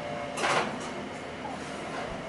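A glass baking dish scraping onto a metal oven rack once, briefly, about half a second in, over a faint steady hum.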